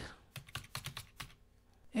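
Computer keyboard keys being typed, a faint quick run of about half a dozen keystrokes in the first half, then quiet keys no more.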